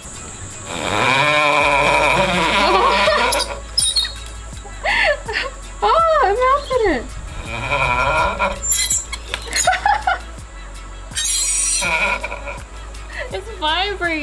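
Steel knife blade pressed onto dry ice pellets, squealing: the metal vibrates as the dry ice turns to gas against it. The sound comes in several separate bursts, each a wavering pitch that swoops up and down.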